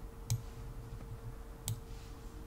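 Two computer mouse clicks about a second and a half apart, over a faint steady hum.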